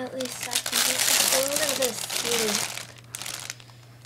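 Loud crinkling and rustling from something being handled close to the microphone. Under it, a voice makes a few short, wordless gliding sounds, and both stop about three and a half seconds in.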